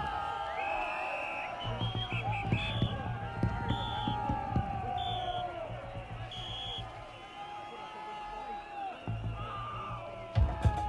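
Concert crowd between songs: many voices and cheering, with several short high-pitched whistle blasts. A low steady hum comes from the stage for a few seconds, fades, then returns near the end.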